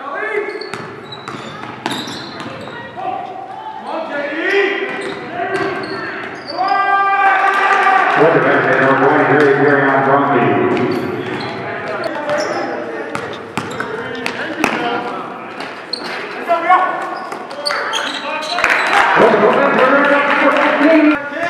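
Live gym sound from a basketball game: voices of players and onlookers calling out, with a basketball bouncing on the court floor.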